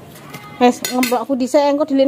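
Dishes and cutlery clinking, with a woman starting to talk about half a second in.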